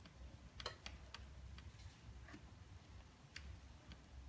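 Faint, irregular clicks and ticks from a heated soldering-iron blade scraping polarizer film and OCA glue off screen glass, with the loudest click about two-thirds of a second in.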